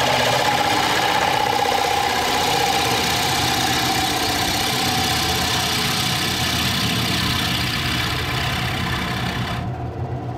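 Wood lathe running while a bowl gouge cuts into the face of a spinning red cedar bowl blank: a steady, rough cutting noise over the hum of the machine. The cutting noise drops away just before the end.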